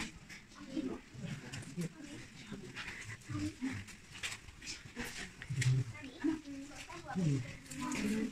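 Indistinct voices of people talking in the background, with scattered light clicks and knocks.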